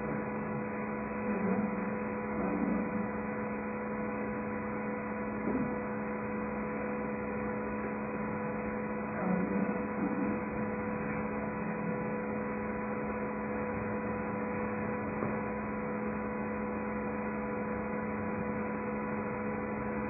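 Steady electrical hum of a recording system, a constant tone with overtones over an even hiss, with a few faint brief murmurs.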